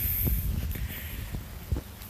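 Wind buffeting a handheld phone's microphone outdoors, a low rumble, with a few soft footsteps and plant rustle as the person walks between the soybean rows.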